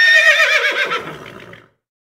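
A horse whinnying: one long, wavering call that falls in pitch and fades out after about a second and a half.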